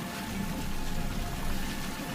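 A steady, wet, liquid rushing sound effect as dark blood is drawn out of a man's chest and pulled along a tendril. A low music score plays under it.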